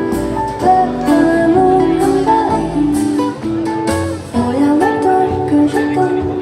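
Live band playing a slow song, notes held and changing in pitch over a light, regular beat.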